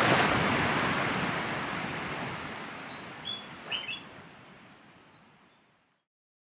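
A swell of rushing noise, loudest at first and fading steadily away over about six seconds, with a few short bird chirps about halfway through.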